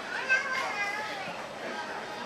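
Indistinct chatter of several shoppers' voices, including high children's voices, with a brief louder peak about a third of a second in.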